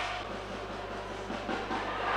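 Steady background noise of an ice hockey arena during play, with no distinct events.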